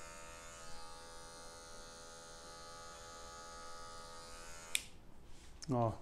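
Electric hair clipper running with a faint, steady hum, then switched off with a click near the end.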